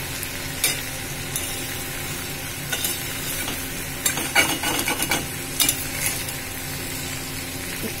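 Bitter gourd and potato slices sizzling in oil in a steel pan on a low flame, with a utensil scraping and clicking against the pan as they are flipped and stirred. The scrapes come every second or so, busiest a little after the middle.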